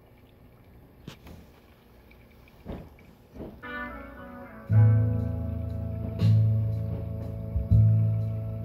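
A few soft clicks, then a song starts playing through a vintage Wurlitzer model 4002 jukebox speaker about three and a half seconds in. A plucked guitar-like intro leads into heavy bass notes about every second and a half.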